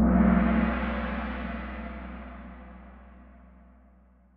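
Gong sound effect from the Kahoot quiz game, struck once as the question's timer ends and the answers are revealed, then fading away over about four seconds.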